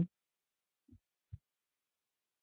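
Near silence in a pause of speech, broken by two faint, short, low thuds about a second in.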